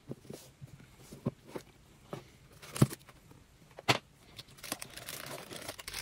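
Cardboard trading-card box being opened by hand, with a few light knocks and taps, then foil Pokémon booster packs crinkling as they are lifted out over the last second or so.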